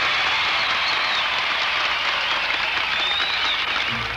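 Crowd applauding, a steady wash of clapping with some cheering.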